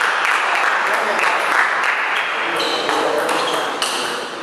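Table tennis rally: a celluloid ball clicking off paddles and bouncing on the table in an irregular series of sharp clicks, in a reverberant hall.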